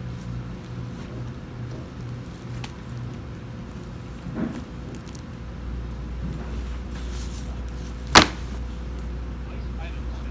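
A hardcover picture book set down on a library self-checkout pad, landing with a single sharp knock about eight seconds in, over a steady low room hum.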